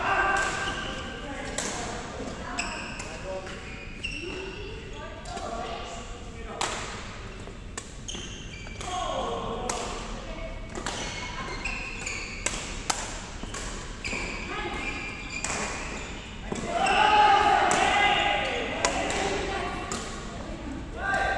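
Badminton rackets striking a shuttlecock in a rally, sharp hits at irregular intervals, with players' voices and calls around them, loudest about three-quarters of the way through. The hits and voices echo in a large sports hall.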